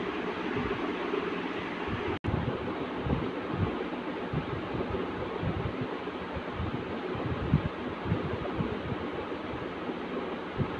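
Steady rushing background noise with soft, irregular low thumps and rustles as cloth and a measuring tape are handled on the floor. The sound drops out for an instant about two seconds in.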